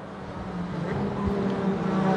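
A pack of GT4 sports race cars running at racing speed, their engines holding a steady note and getting steadily louder as the cars approach.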